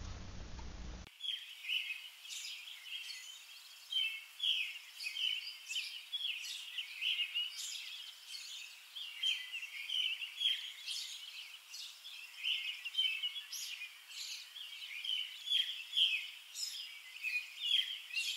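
Songbirds chirping and singing, many short overlapping calls. They start suddenly about a second in, after faint room hiss.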